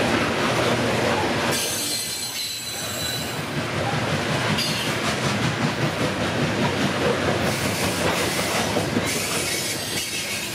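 Freight train coal hopper cars rolling past close by, steel wheels running steadily on the rails. A high-pitched wheel squeal sets in about a second and a half in and lasts about two seconds, and squeal rises again near the end.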